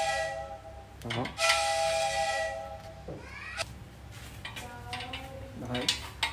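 Breath blown into the end of a chrome Honda Cub 70 exhaust header pipe, sounding a steady, breathy, flute-like hoot. A first note fades out at the start, a second lasts about a second and a half, and fainter tones follow near the end.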